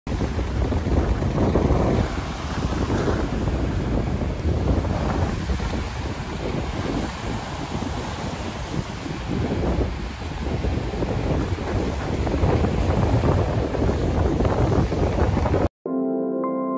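Wind buffeting the microphone over ocean surf breaking and washing up on a sandy beach, a loud, rough, uneven rush that swells and eases. It cuts off suddenly near the end.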